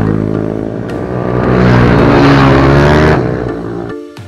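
Ohvale minibike's small single-cylinder four-stroke engine revving as it passes close by, its pitch rising and falling, loudest in the middle and fading near the end.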